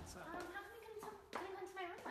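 A person's voice making hesitant sounds that are not words, with one short sharp knock about one and a half seconds in.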